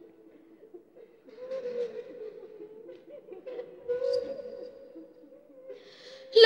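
Faint, indistinct human voice sounds, quiet and irregular.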